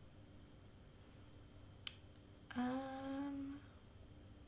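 A woman humming one short, slightly rising note for about a second, just after a single sharp click.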